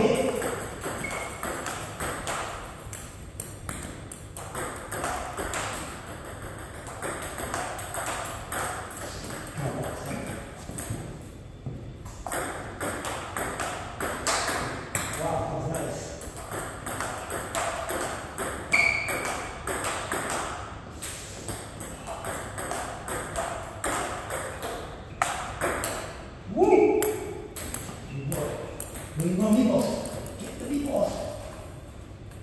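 Table tennis rally: a celluloid ball clicking back and forth off paddles and the table, a long run of quick, sharp clicks.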